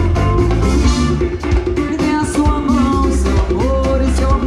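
Live band playing loud amplified music: a woman singing into a microphone over drum kit and hand percussion, with keyboard and guitar.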